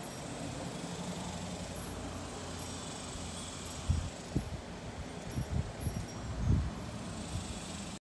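Outdoor background with a steady low rumble and a few faint, brief high peeps. From about four seconds in, a run of irregular dull low thumps on the microphone.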